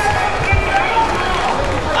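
Ringside sound of a boxing bout: faint voices and shouts in the background, with a low thump about half a second in.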